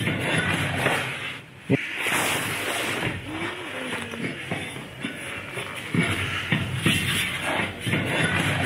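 Rustling and handling noise from a person climbing down a rusty steel ladder into a concrete shaft, with a sharp knock about two seconds in and a few duller bumps near the end.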